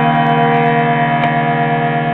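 Hand-pumped harmonium holding a steady chord of reeds, with one upper note dropping out about half a second in.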